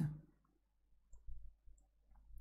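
A pause in the conversation: the end of a spoken word, then a quiet room with a few faint short clicks.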